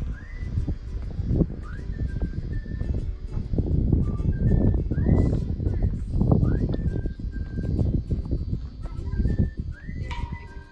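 Gusty wind rumbling on the microphone, swelling and easing. Over it run short, repeating, whistle-like rising notes of background music.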